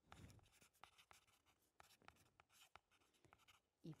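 A pencil writing on a notebook's paper: faint, irregular scratching strokes, one after another.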